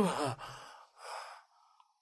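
A drunk man sighing: two breathy exhales as he is slumped down.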